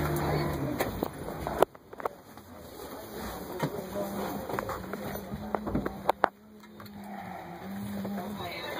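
School bus engine running, heard from inside the passenger cabin as a low steady hum. The hum drops away suddenly about a second and a half in and comes back steady later. Several sharp knocks stand out, the loudest near the start and about six seconds in.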